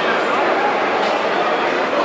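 Many people talking and calling out at once in a large, echoing hall: a steady crowd babble with no single voice standing out.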